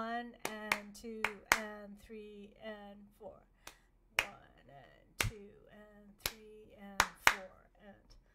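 Hands clapping out a written rhythm from sheet music, about a dozen sharp claps at uneven spacing, to check how the passage goes. A woman's voice sings the rhythm along with the claps, holding one pitch through the first few seconds.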